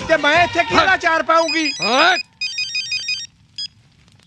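An electronic telephone ringtone plays a quick run of short beeps at several pitches for about a second, with a brief burst again just after.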